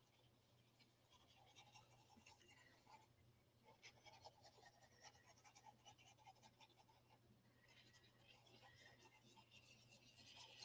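Near silence, with faint irregular scratching of a plastic glue-bottle nozzle drawn along the edges of a cardstock pocket, over a faint steady low hum.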